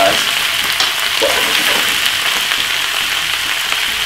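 Cabbage and mixed vegetables sizzling steadily in hot olive oil in a frying pan, a stir-fry under way.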